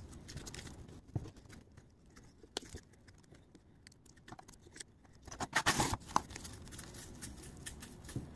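Faint scratchy handling noises as fingers press and work gritty silicon carbide and epoxy onto a taped pistol grip, with scattered small clicks. There is a louder burst of gritty scraping and rustling about five and a half seconds in.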